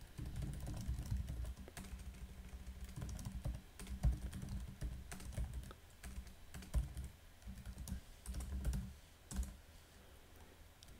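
Typing on a computer keyboard: quick key clicks in uneven runs, broken by a few short pauses.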